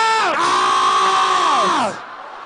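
A loud, drawn-out human yell: two long held cries in a fairly high voice, the second sliding down in pitch and breaking off near the end.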